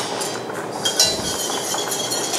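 A metal kitchen utensil clinking against a stainless steel saucepan as butter is worked into brown sauce, with one sharp clink about a second in that rings on briefly.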